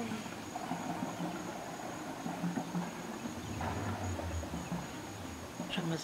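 High school marching band practising, heard as a run of short, evenly spaced low notes, over a steady high insect trill.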